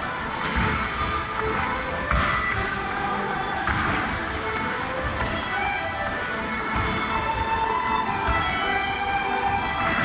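Live Irish traditional music playing a reel, with the thuds of dancers' feet on the floor and the general noise of a crowd.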